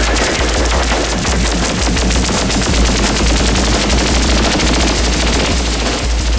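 Electronic synthesizer music: a dense, fast stream of rattling clicks over a steady deep bass.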